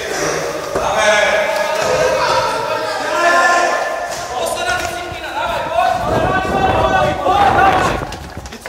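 Several voices shouting encouragement, echoing in a large hall. Heavy thumps come near the end.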